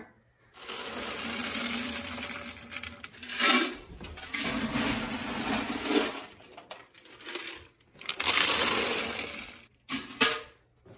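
Hard wood pellets rattling and pouring as they are scooped up and tipped into a pellet stove's hopper. The sound comes in several runs a few seconds long, and the loudest run is near the end.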